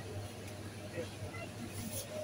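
Supermarket background: faint, indistinct chatter of voices over a steady low hum.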